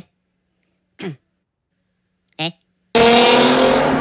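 Two brief, high cartoon-voice chirps, then about three seconds in a loud car engine sound cuts in suddenly and keeps going.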